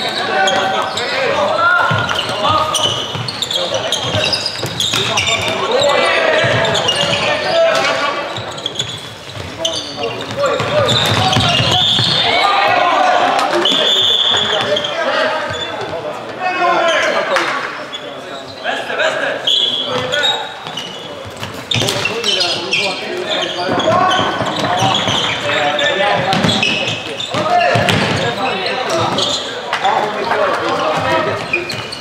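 Floorball game sounds echoing in a large sports hall: players and bench calling and shouting, over repeated knocks of plastic sticks and ball and steps on the court floor.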